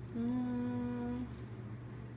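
A person humming one steady held note for about a second, starting just after the beginning and stopping a little past the middle.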